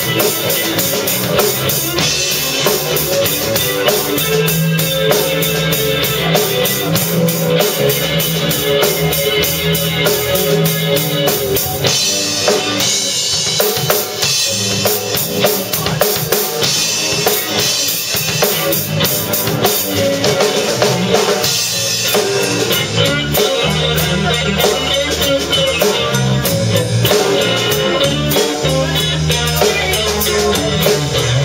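Live instrumental rock band playing: a drum kit driving the beat with bass drum and snare, under electric bass and electric guitar.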